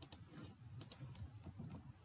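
A few faint, scattered clicks from computer keys and mouse buttons being pressed.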